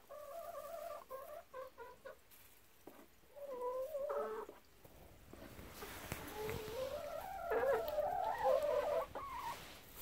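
Brown laying hen clucking close to the microphone: a run of short calls at first, then longer, wavering calls in the second half over a rustling noise.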